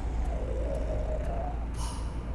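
Trailer soundtrack: a deep, steady low rumble with a thin, wavering tone slowly rising over it, and a brief hiss near the end.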